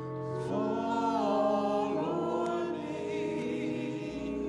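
Slow gospel music: long sustained chords under held, sliding sung notes, changing chord about halfway through.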